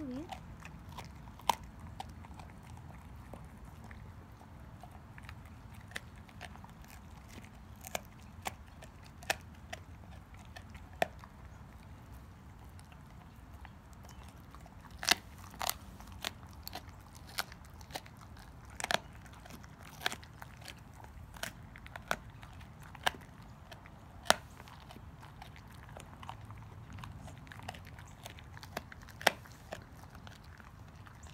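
A dog crunching a raw beef rib bone with its back teeth: sharp, irregular cracks of bone, a few much louder than the rest, with quieter chewing between them.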